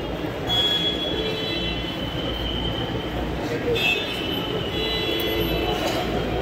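A passenger train moving, with a steady low rumble and high-pitched whines from the wheels on the rails: around half a second in and again about four seconds in.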